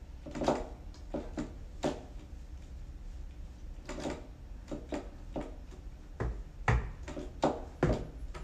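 Keys of a MIDI keyboard controller clacking as it is played, heard only as the keys' own mechanical knocks since the notes go to headphones. The knocks come unevenly, some loud, sometimes several close together.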